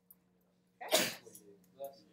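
A faint steady electrical hum, broken about a second in by one short, loud vocal outburst from a person.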